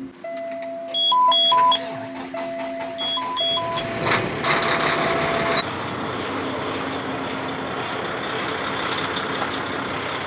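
Peterbilt semi truck cab: a dashboard warning buzzer sounds on key-on, joined by two pairs of higher chimes. About four seconds in, the diesel engine cranks and starts, then settles into a steady idle.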